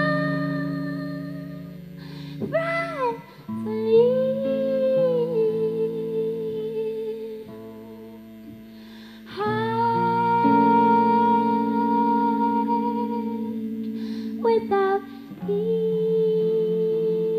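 A woman singing long, slow wordless notes over a sparse guitar accompaniment. Her voice slides up in pitch about two and a half seconds in, and a new held note begins just after halfway.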